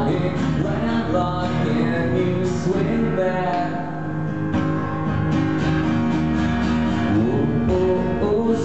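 Acoustic guitar strummed steadily in an instrumental stretch between sung lines of a song played live.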